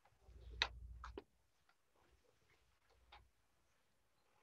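Faint paper-handling sounds: a few light taps and clicks as a sheaf of papers is handled and laid down on a wooden counsel table, with a low rumble of handling noise in the first second.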